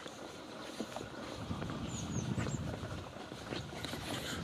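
Outdoor street ambience while walking: soft footsteps on pavement, a few short high bird chirps about two seconds in, over a low rumble that grows louder through the second half.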